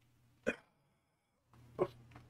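A man's two short wordless vocal sounds, frustrated huffs or grunts, one about half a second in and one near the end, as he stretches with his hands behind his head.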